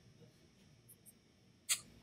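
A single sharp computer mouse click near the end, against faint room tone.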